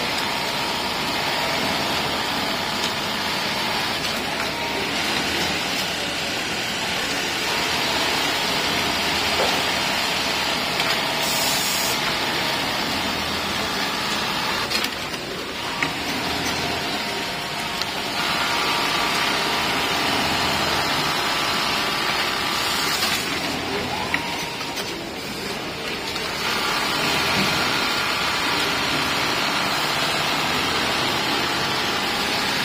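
Steady machine din of a garment sewing floor: industrial sewing machines running, heard as a constant rushing noise with no clear stitch rhythm, easing off briefly twice.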